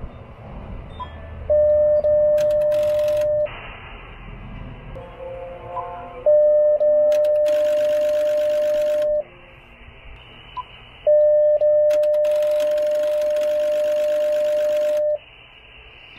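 An HF transceiver gives a steady beep three times, each lasting two to four seconds, while it sends a tuning carrier into an MFJ-993B automatic antenna tuner. During the second and third beeps there is a rapid clatter, typical of the tuner's relays switching as it searches for a match. Between the beeps the receiver plays band static hiss.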